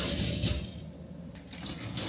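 Dishwasher wire racks being slid out on their rollers, rattling, with dishes and cutlery clinking in them; a few clicks come near the end as the upper rack and cutlery tray are drawn out.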